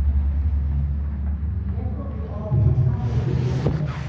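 A steady low rumble, louder in the second half, with faint voices murmuring under it near the end.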